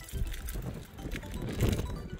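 Wind buffeting the microphone on an exposed mountain summit: an uneven low rumble with a hiss.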